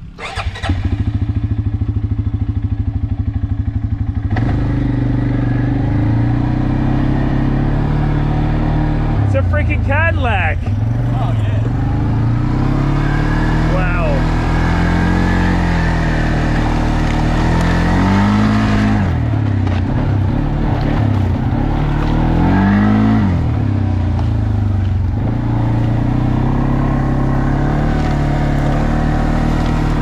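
Kymco ATV engine starting up just after the opening, idling for a few seconds, then running as the quad is ridden off. Its pitch rises and falls with the throttle, with two clear revs up and back down in the second half.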